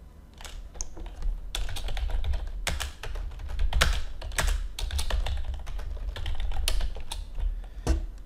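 Typing on a computer keyboard: a quick, uneven run of keystrokes as a short phrase is typed out, over a low rumble.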